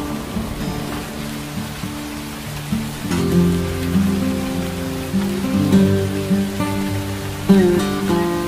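Slow, gentle acoustic guitar music with a few plucked notes ringing on, over a steady hiss of rain.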